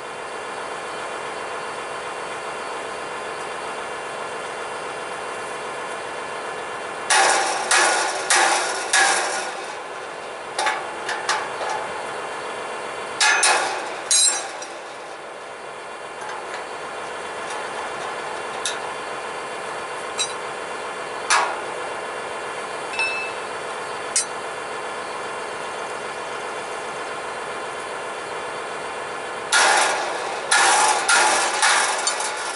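Hammer blows on the steel shovels and shanks of a John Deere 2210 field cultivator as worn shovels are knocked off and new ones seated: quick runs of metal strikes about seven to nine seconds in and again around thirteen seconds, then single taps a second or two apart, with more strikes starting near the end. A steady hum runs under it all.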